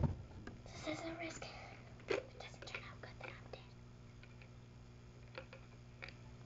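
Bottles being handled: a sharp knock at the start and another about two seconds in, with scattered small clicks of plastic and glass, then quieter.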